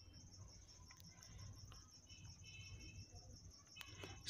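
Near silence: a faint, steady, high-pitched pulsing chirp, typical of a cricket, with a few soft clicks of small objects being handled on a table.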